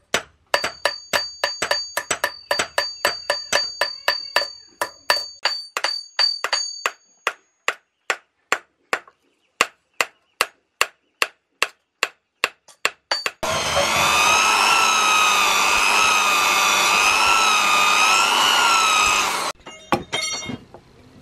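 Hand hammers striking a hot knife blade on a small steel anvil: at first two smiths strike in quick alternation with the anvil ringing, then a single hammer at a slower, even pace. About thirteen seconds in the hammering stops and a loud steady whine with a wavering pitch runs for about six seconds, then cuts off suddenly.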